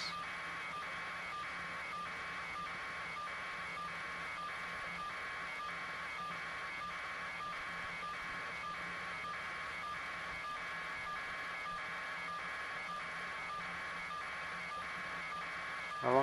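An electronic pulsing signal, about two even pulses a second at a steady level, over a faint low hum.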